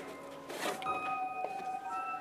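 A short whooshing rush about half a second in as a free-standing stage-prop door swings shut, followed by a few sustained music notes held steady.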